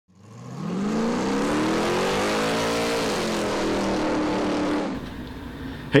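Car engine revving: its pitch climbs for about two seconds, then drops as it eases off, over a rushing noise, and fades out about five seconds in.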